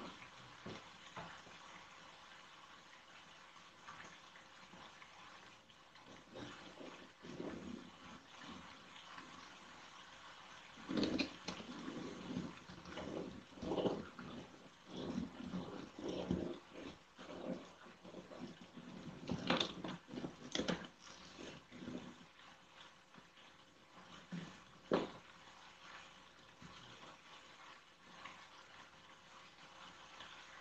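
Hands rubbing and pressing a cardboard panel down onto a hot-glued cardboard box: soft, irregular scraping and rustling that comes in a cluster through the middle, with a sharp tap a few seconds later.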